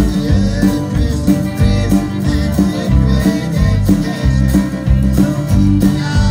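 Live country band playing: fiddle, acoustic and electric guitars and drums, with a steady beat.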